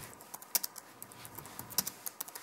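Typing on a computer keyboard: a quick, irregular run of key clicks, with two louder clacks about half a second in and near the end.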